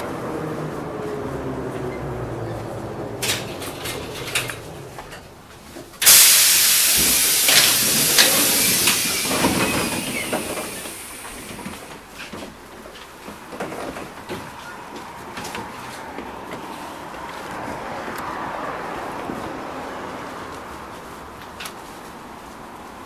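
LVS-97K articulated tram slowing into a stop, its running whine falling in pitch. About six seconds in comes a sudden loud hiss of air that lasts several seconds and fades. After it the sound settles to a quieter mix of cabin and street noise.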